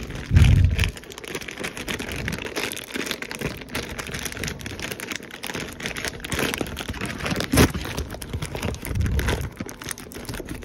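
Paper package wrapping being crinkled and torn open by hand close to the microphone, a dense run of crackling and rustling. A loud low thump comes just after the start, and a sharper crack comes about three-quarters of the way through.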